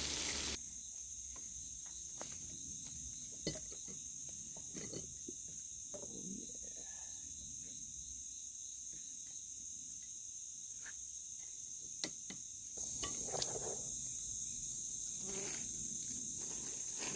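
A steady, high-pitched chorus of insects, with a few faint clicks and knocks; the chorus grows a little louder about three-quarters of the way through.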